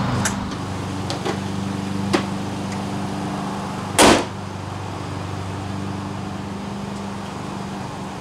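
A Ford E350 van's hood being shut with one loud bang about four seconds in, over a steady low hum, with a few faint clicks earlier.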